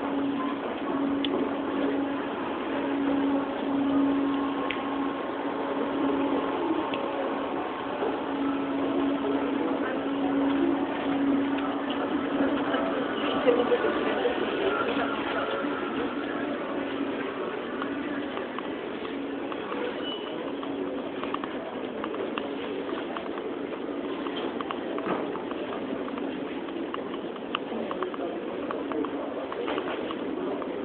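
Airport terminal hall ambience: a murmur of people's voices with scattered small clicks and footfalls, over a steady low hum that is strongest through the first half.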